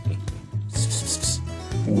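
Short scraping rub of metal scissors sliding up out of a plastic cup of pencils, lasting about half a second, about a second in, over a low repeating music bass line.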